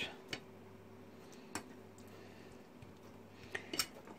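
A few faint, sharp clicks of a metal fork touching a nonstick frying pan as grated potato is pressed flat, over a low steady hum.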